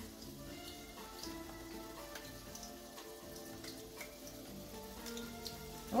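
Chicken cutlets frying in hot oil in a pan, the oil crackling and popping in scattered little bursts, with faint music behind.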